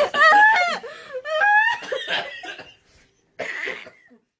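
High-pitched laughter in long squeals that rise and fall, dying away about three seconds in, then a short breathy burst, like a cough or a gasp of laughter, near the end.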